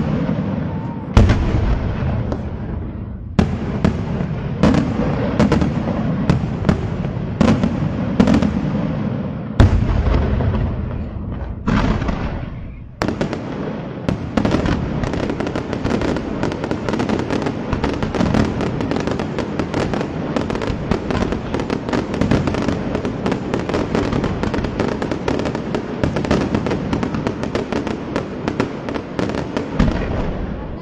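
Daytime fireworks display: a string of loud, separate shell bursts for the first dozen seconds or so, then, about thirteen seconds in, a dense unbroken barrage of rapid bangs and crackle.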